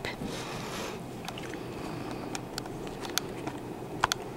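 Handling noise from a handheld camera being moved: a few small sharp clicks and rustles over a steady low background hum.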